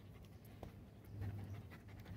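A dog panting faintly, with a low background hum.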